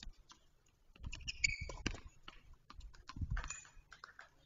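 Scattered light knocks and clicks of tennis play on a court, with a brief high squeak about a second and a half in.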